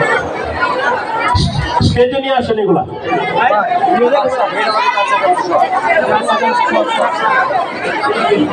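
Several people talking at once: crowd chatter, with no one voice carrying clear words.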